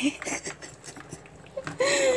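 A few faint clicks and scrapes as live crabs shift against the sides of a plastic bucket; a woman's voice comes in near the end.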